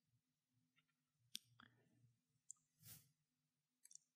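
Near silence: faint room tone with a few soft, isolated clicks.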